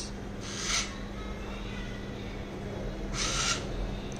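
Small DC motor of a dual-axis solar tracker humming steadily at one low pitch as it turns the panel toward the light falling on its sensors. Two brief hissy rustles come about half a second in and again about three seconds in.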